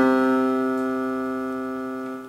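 A single C (do) held on an electronic keyboard with a piano voice, one steady note slowly dying away.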